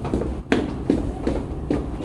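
Footsteps on a wooden studio floor as a dancer steps through a line-dance pattern: a run of short footfalls, about four in quick succession in the second half.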